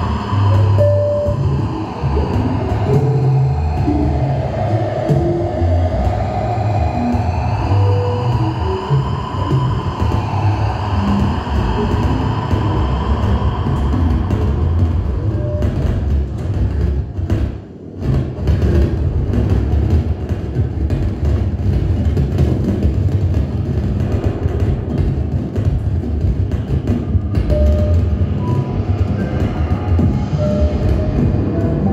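Improvised music for electronics and drum kit: a dense, rumbling low texture with slowly gliding electronic tones, and rapid drum strokes through the second half. The sound dips briefly a little past the middle.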